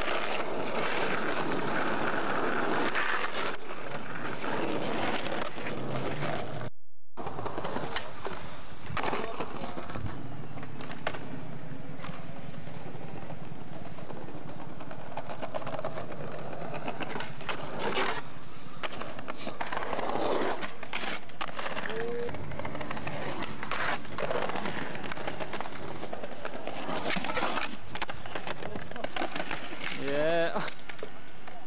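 Skateboard wheels rolling over stone paving: a steady, loud grinding rush, broken by occasional sharp clacks of the board. The sound drops out for a moment about seven seconds in.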